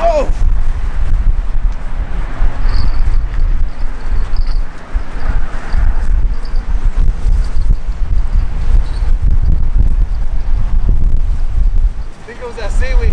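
Wind buffeting the camera's microphone: a loud, gusty low rumble.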